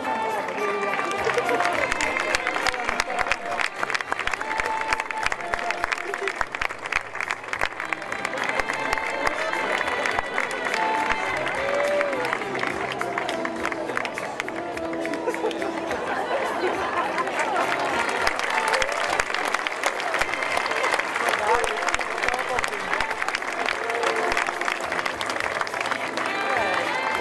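Audience applauding, a dense, steady clapping that lasts the whole time, with crowd voices and music underneath.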